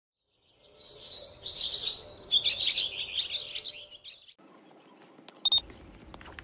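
Small birds chirping and twittering for about three and a half seconds, cutting off abruptly. About five and a half seconds in comes a brief, loud, high-pitched beep.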